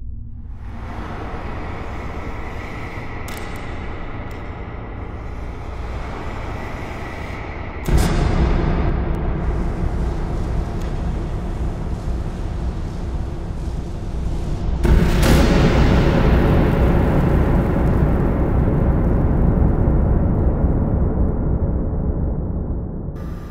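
Slowed-down sound of a double-barrelled percussion-cap pistol firing: a low, drawn-out rumble under music, growing louder in two sudden steps about eight and fifteen seconds in.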